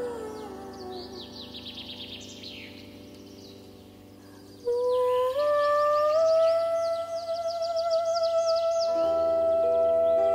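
A woman's voice singing a lullaby without words: a phrase slides down and fades in the first second, leaving birds chirping. About five seconds in she starts a long note that steps up twice and is held with vibrato. Near the end, plucked bandura strings come in under it.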